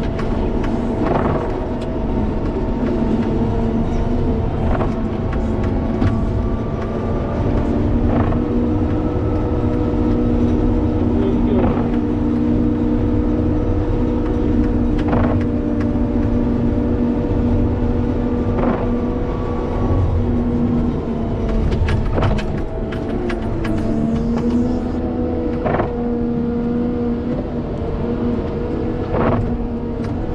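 Wheel loader's diesel engine running under load while it pushes snow with a Metal Pless pusher, a steady engine hum throughout. Sharp knocks come about every three and a half seconds.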